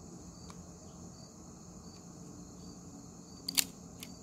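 Rock Island Armory 1911 pistol in .45 ACP being chambered: a faint click about half a second in, then a sharp metallic double click near the end as the slide is racked and snaps forward on a round. Crickets chirp steadily in the background.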